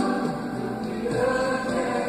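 Christian choral music: a choir singing steadily.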